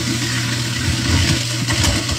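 Kitchen garbage disposal running with a steady motor hum and a dense grinding rattle as it chews up lemon and lemon-tree leaves. The unit has just been freed of a jammed spoon and is grinding normally.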